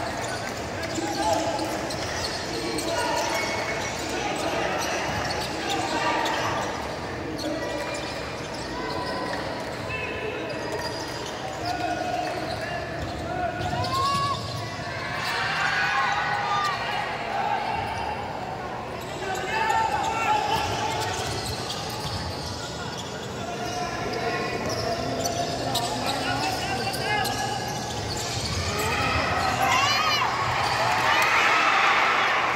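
Basketball being dribbled and bounced on a hardwood court during live play, mixed with the voices of players and spectators.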